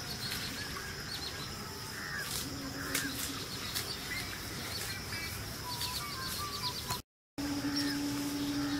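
Outdoor rural ambience of birds chirping and calling over a steady high-pitched note and low background noise, with a sudden brief dropout about seven seconds in.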